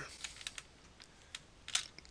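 A few scattered computer keyboard keystrokes and clicks, the loudest near the end.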